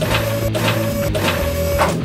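A mechanical whirring sound, a steady tone with a hiss pulsing about four times a second and two brief breaks, cutting off just before the end, as the green Hulk robot toy's chest hatch swings open. Background music plays underneath.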